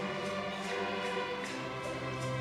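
Student string orchestra playing sustained chords, with maracas and a shaker keeping a steady beat of a little over two strokes a second.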